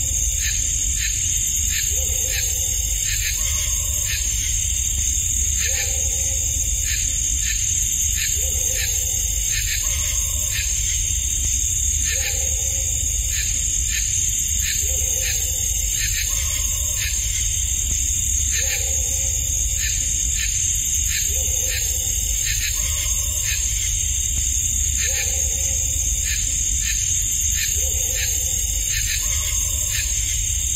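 Night field recording of a southern swamp forest, played back in a loop: a short bark and a crow-like call recur every few seconds over a steady high drone and pulsing rhythm of night forest sounds, with low hiss and rumble. The callers are unidentified: a dog and a crow calling in the middle of the night are suggested, though a crow awake at that hour seems odd.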